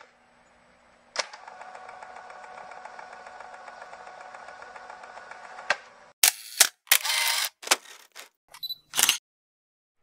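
Camera sound effects for a logo intro: about a second in, a click starts a steady mechanical whir with rapid fine ticking that lasts about four and a half seconds and ends on another click. Then comes a run of loud, sharp shutter-like clicks and short bursts of mechanical noise, cutting off about a second before the end.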